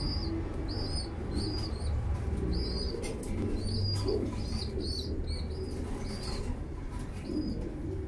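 Birds in a pigeon loft calling: a short, high chirp-like call repeats about once or twice a second and stops about seven seconds in, over a steady low rumble.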